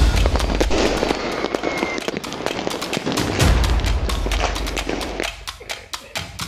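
Many fireworks and firecrackers going off at once: a dense run of sharp cracks and pops, with deep booms at the start and about three and a half seconds in, thinning out just before the end.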